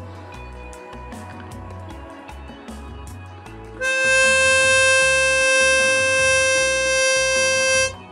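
Diatonic harmonica sounding a single held draw note on hole 4, a C, steady for about four seconds from about halfway in, then cutting off; it is being checked against a tuner for pitch and reads in tune.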